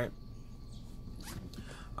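Faint low running noise inside a moving car's cabin, with a few brief scratchy rustles in the middle.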